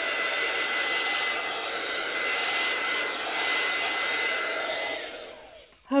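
Craft heat tool blowing steadily, with a thin high whine over its fan noise, drying the paint on a journal page; it winds down and fades out near the end.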